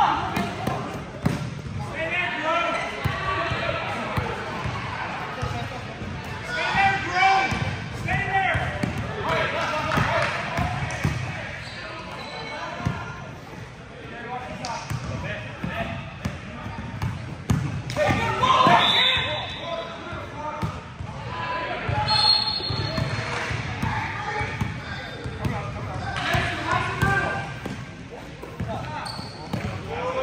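A basketball bouncing on a gym floor during play, with short knocks throughout, and players' and spectators' voices calling out in bursts several times, all echoing in a large gym hall.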